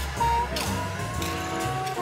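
Jazz music: a saxophone holds one long, slightly rising note through the middle, over walking bass and cymbals.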